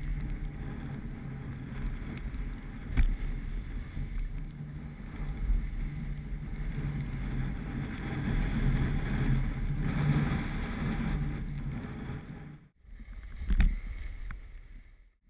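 Wind buffeting the microphone of a camera carried by a moving skier, a steady rough rush with the hiss of skis sliding on snow beneath it. There is a sharp knock about three seconds in, and near the end the sound cuts out briefly, then comes back with a short loud burst.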